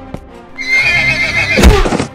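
Horse whinny sound effect, a loud wavering call starting about half a second in, with a sharp hit near the end as the horse kicks. Background music continues underneath.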